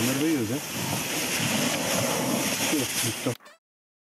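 Men shouting a count over a steady splashing, rustling noise as a giant catfish is heaved into a small boat. The sound cuts off abruptly about three and a half seconds in.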